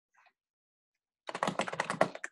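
Typing on a computer keyboard: near silence, then a quick run of keystrokes starting just over a second in.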